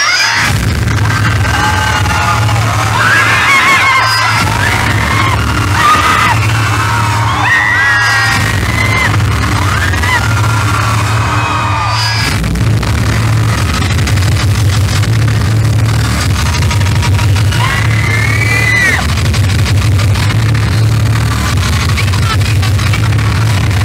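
Loud concert music over a PA system with a heavy, pulsing bass. High voices shout and whoop over it through the first half and again near the end.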